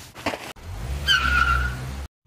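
Car driving off: a few short noises, then a low engine rumble from about half a second in, with a high tyre squeal partway through.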